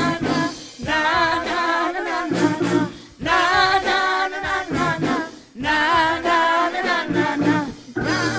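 Gospel worship singing: voices sing long, ornamented phrases with vibrato, broken by brief breaths. Short, steady low held notes sound between the phrases.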